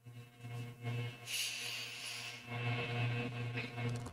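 A long, deep breath drawn in, a soft rushing hiss lasting about a second, over a faint steady low hum.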